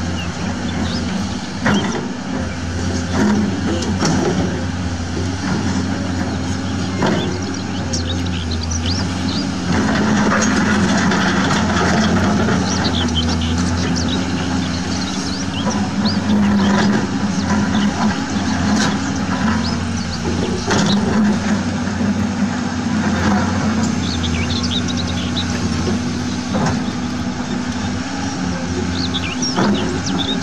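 Heavy diesel engine of a Caterpillar tracked excavator running steadily as it digs, the note swelling under hydraulic load about ten seconds in and again a few seconds later.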